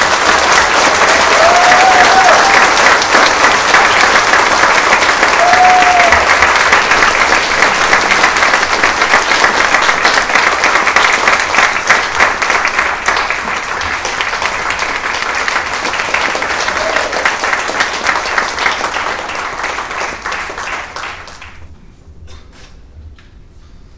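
Audience applauding after an orchestra piece ends, with two short high calls from the crowd in the first few seconds; the clapping dies away near the end.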